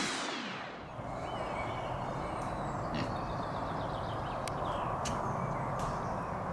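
Music fading out in the first second, then outdoor farmyard ambience with a steady background hiss and scattered short bird calls, including a domestic turkey calling.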